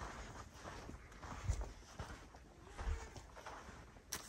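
Faint footsteps of a person walking slowly, two soft thumps about a second and a half apart, with light handling clicks.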